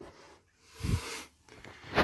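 A person breathing out heavily once, about a second in, with a sharp click near the end.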